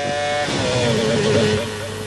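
Formula One V10 engines of cars passing at speed, a high engine note that wavers and sags slightly as they go by and eases off near the end.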